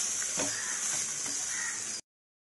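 Mutton liver pieces frying in a non-stick pan: a steady sizzling hiss that cuts off suddenly at the end.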